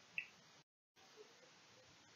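Near silence: faint room tone, with one brief, faint high blip near the start and a short total dropout where the recording is cut.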